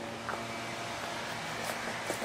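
Steady outdoor background noise: an even hiss with a faint low hum, with no clear single event.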